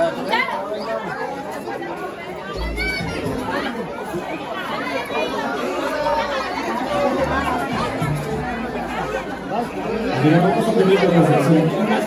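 A dance song with singing plays over the chatter of a crowd of guests.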